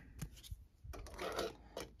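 A hard plastic trading-card case being handled and set into a small clear display stand: a few light clicks and taps, with a stretch of faint rubbing in the middle.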